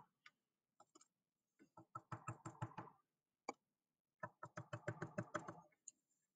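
A paint-dipped cork dabbed again and again onto paper on a table, stamping painted dots: two runs of faint, quick taps, several a second, with a single tap between them.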